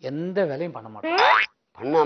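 A man's voice in short vocal sounds, then a quick sound rising steeply in pitch about a second in.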